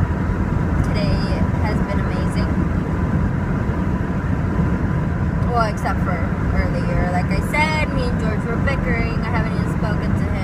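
Steady low rumble of road and wind noise inside a moving car driven with its windows and sunroof open.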